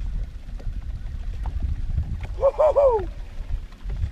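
Low rumble of wind and water around the boat, with a short, high-pitched voice exclamation about two and a half seconds in.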